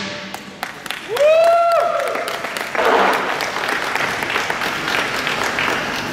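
Crowd applauding and cheering, with one long shouted call about a second in.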